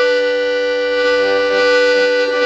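Hohner piano accordion holding a block chord on a single reed, with shimmer: all the notes waver together as the bellows tremble slightly under a nervous hand.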